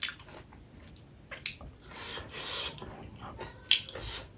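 Close-up eating sounds: a person chewing a mouthful of rice and fried green chillies with wet lip smacks. There are sharp smacks at the start, about a second and a half in, and near the end.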